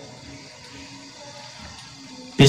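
A pause in speech: low, steady background noise with no distinct event.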